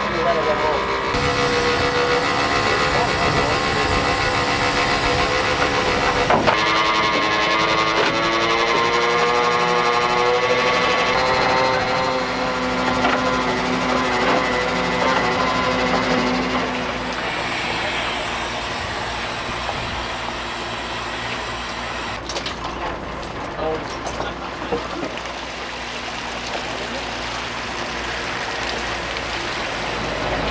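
A trawler's engine and hydraulic net winch run while the trawl is hauled back aboard. Tones hold and shift slowly in pitch over a steady low rumble through the first half. Later the sound turns to a rushing, noisier wash with some knocks, as water streams off the net.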